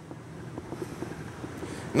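Steady low hum of the motorhome's 6.5 kW Onan gasoline generator running, heard inside the coach, slowly getting louder, with a few faint taps.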